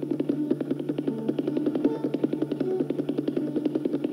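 Tabla solo: rapid, dense strokes on the tabla, the fingertips striking the right-hand drum (dayan), over a steady low drone and a short repeating melody line.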